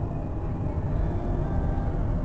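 Steady low rumble of a car in motion heard from inside the cabin: engine and tyre noise on a wet road, the car fitted with winter tyres.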